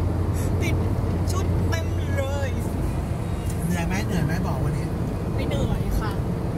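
Steady low drone of a car driving, heard from inside the cabin, with people's voices over it.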